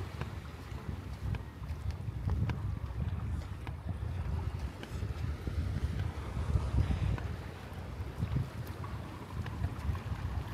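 Wind buffeting the microphone: a gusty low rumble that swells and fades unevenly, with a few faint ticks.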